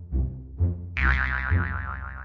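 Background music with a steady low beat; about a second in, a wobbling cartoon 'boing' sound effect that slides slowly down in pitch, a comic effect for a bow shot that fails.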